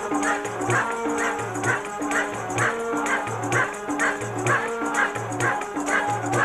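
Devotional kirtan-style music: voices singing over held harmonium-like tones, with a low drum beat about once a second and regular jingling percussion.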